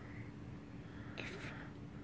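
Quiet room with a brief soft whisper about a second in.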